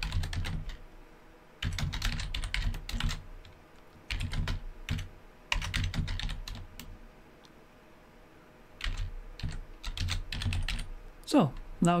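Typing on a computer keyboard: several short bursts of keystrokes with brief pauses between them.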